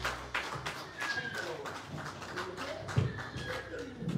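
Scattered hand claps and taps from a small congregation, irregular and a few each second, with low voices underneath and one louder thump about three seconds in.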